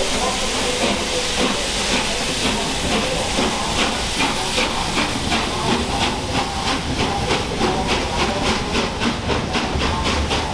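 Three-cylinder steam locomotive (Peppercorn A1 Pacific 60163 Tornado) pulling away under steam: a steady hiss of steam, with exhaust beats emerging a few seconds in and quickening to about four a second as it gathers speed.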